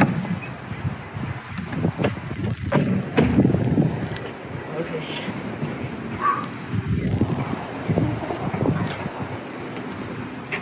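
Wind buffeting the microphone, with several knocks and scuffs in the first few seconds from an aluminium stepladder being climbed and a stack of cardboard boxes being handled.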